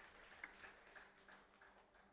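Near silence: faint room tone with a few soft ticks that die away.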